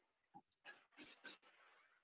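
Near silence, with a few faint, brief noises.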